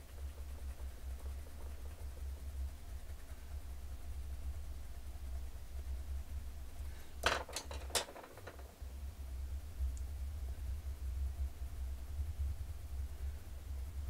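A low steady hum throughout. About seven seconds in, three or four sharp clicks come close together as coloured pencils are set down and picked up, knocking against each other.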